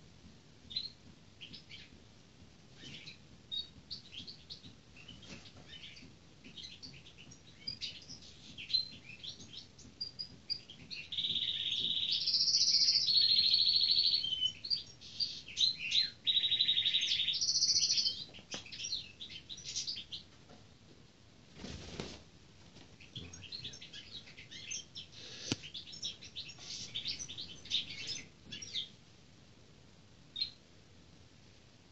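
European goldfinch singing: rapid high twittering throughout, with several drawn-out buzzy notes in the middle, the loudest part. A brief rustling noise about two-thirds of the way through.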